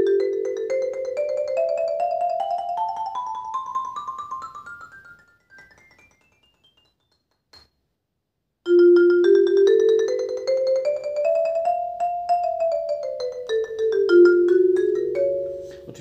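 Xylophone with wooden bars struck by two soft mallets in a fast roll that climbs steadily up the keyboard and fades out about five seconds in. After about three seconds of quiet, a second fast roll rises and then comes back down to the low notes.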